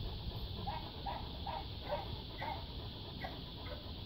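A Great Dane panting with its mouth open, in quick even breaths a little over two a second.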